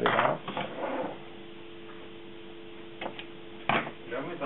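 Hands handling wires and tools on a workbench: a burst of rustling and clattering in the first second, a couple of light clicks, then one sharp snap near the end. A steady electrical hum runs underneath.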